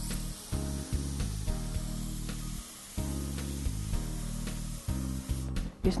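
Mouth-blown atomizer spraying watercolor paint: a steady hiss of blown air and paint mist that stops shortly before the end.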